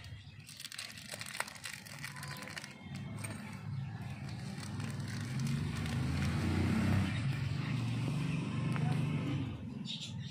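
A motor vehicle engine running nearby, growing louder over several seconds and dropping away sharply near the end, with indistinct voices.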